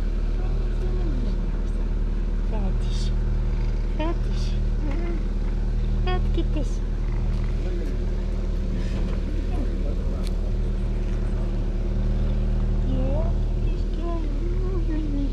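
Tabby cat purring loudly right at the microphone while being stroked: a steady low rumble that breaks briefly every few seconds, with a few short rising calls over it.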